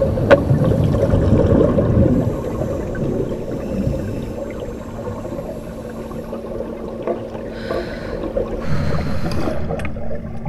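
Muffled underwater bubbling from scuba divers' regulators, a continuous low rumble with two louder bubble bursts near the end.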